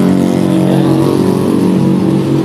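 Diesel engine of a standing passenger train idling: a loud, steady low drone with no change in pitch.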